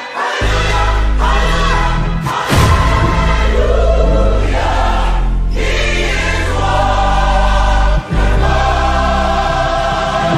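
Music: a gospel choir singing loud sustained chords over deep bass notes, with a heavy hit a couple of seconds in and a brief break about eight seconds in.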